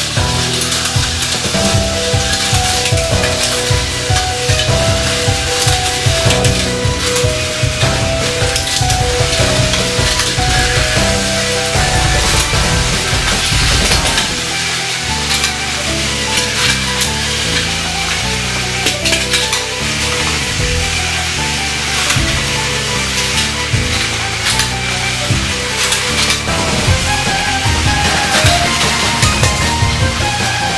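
Background music with a melody and bass line over the steady whirring and rattling of several battery-powered Plarail toy trains running on plastic track, with small clicks as the wheels cross the rail joints.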